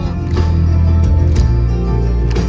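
Melodic death metal band playing live: electric guitars, bass and drums over held low notes, with cymbal strikes about once a second.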